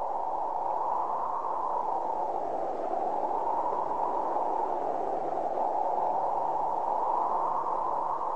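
Ambient drone opening a soundtrack: a soft, muffled rushing noise that swells and eases slowly, over a steady low hum.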